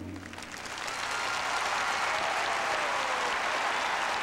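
Arena audience applauding at the end of a figure skating programme, the applause swelling in the first second as the music stops and then holding steady.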